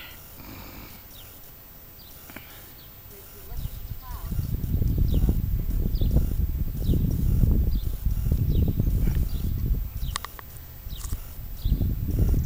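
Gusty wind buffeting the microphone: low rushing noise that sets in about a third of the way in, rises and falls in gusts, eases briefly and picks up again near the end, as a thunderstorm approaches. Faint short high chirps repeat in the background.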